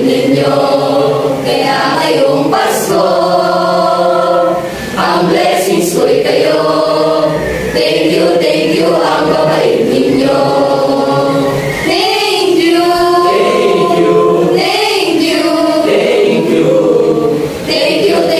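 A mixed choir of about thirty young voices singing together in long, held phrases, with brief breaks between phrases near five seconds in and again near the end.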